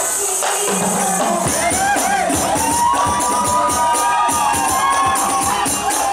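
A rebana group performing a sholawat song: female voices sing a melody with long held, gliding notes over hand-struck rebana frame drums and jingling tambourine-style frames in a steady beat. The drumming thins for a moment near the start before the singing comes in.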